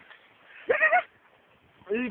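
A person's voice: one short, high-pitched vocal sound without words, a little under a second in.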